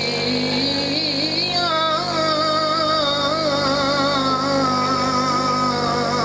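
A man's voice chanting a melodic recitation through a microphone and loudspeakers: a few short wavering phrases, then one long held note with a quavering pitch. A steady low hum runs beneath it.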